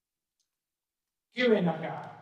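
Near silence, then about a second and a half in a man starts speaking into a microphone.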